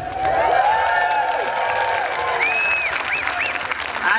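An audience applauding and cheering, with long drawn-out whoops over steady clapping.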